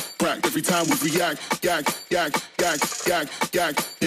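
A track in a live DJ mix played from a Denon DJ controller: a fast vocal line over a steady beat.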